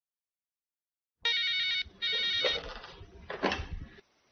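Electronic desk telephone ringing with a warbling trill: two short rings, starting about a second in. A short clunk follows near the end as the handset is picked up.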